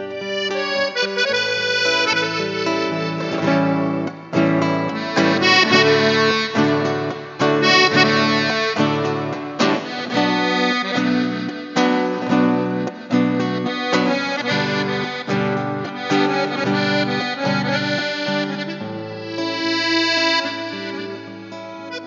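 Instrumental passage on a diatonic button accordion (gaita ponto) playing the melody over acoustic guitar accompaniment in a rhythmic beat, softening over the last few seconds.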